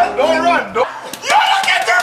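Men's voices calling out, with a sharp smack about a second in.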